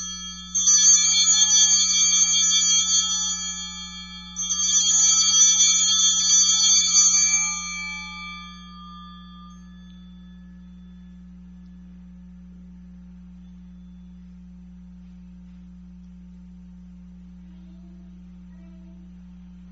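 Altar bells rung twice, each a few seconds of jangling metallic ringing, marking the elevation of the consecrated host. The second ring fades out about halfway through, leaving a steady low hum.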